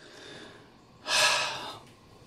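A man's breath through the mouth while smoking a hand-rolled cigarette. A faint breath comes first, then a louder rush of air about a second in that fades over most of a second, like smoke being blown out after a drag.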